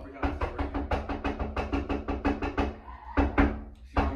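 An elevator door being shaken and banged: a rapid rattle of knocks, about six a second, for a couple of seconds, then one heavier bang near the end. Background music runs underneath.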